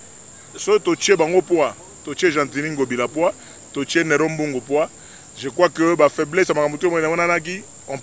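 A man talking with short pauses, over a steady high-pitched chirring drone of crickets.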